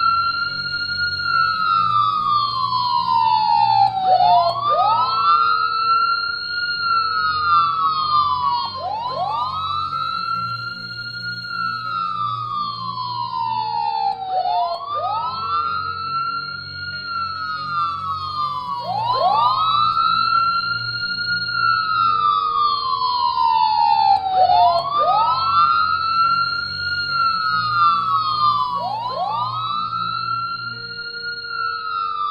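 Emergency siren in a slow wail. Each cycle rises quickly, holds briefly, then falls slowly, repeating about every five seconds, with a low steady hum beneath.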